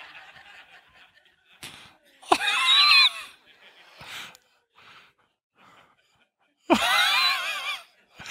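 A man laughing hard at his own joke, caught by a headset microphone. There are two loud, high-pitched stretches of laughter, one about two seconds in and one near the end, with short quieter catches of breath and laugh sounds between them.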